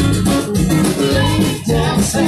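Live band playing an upbeat country-rock song: electric guitar over a steady bass line, in an instrumental stretch between sung lines, heard through an open-air crowd's phone recording.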